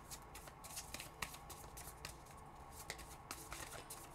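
Tarot deck being shuffled in the hands: faint, irregular clicks of cards sliding and tapping together.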